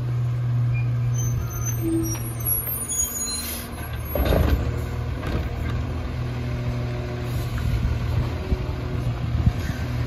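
Autocar WX garbage truck's diesel engine running steadily, with a short air-brake hiss about three and a half seconds in. The McNeilus Autoreach arm's hydraulics then grab and lift a trash cart, with knocks and clunks through the second half.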